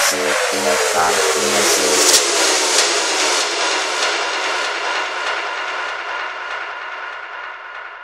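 Psytrance track ending: the kick drum and bassline stop at the start, leaving an electronic synth noise sweep and a slowly falling tone that fade away steadily.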